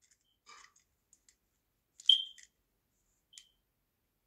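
A few faint, sharp clicks in otherwise near quiet. The loudest comes about two seconds in and the last near the end, and each of those two carries a brief high beep-like ring.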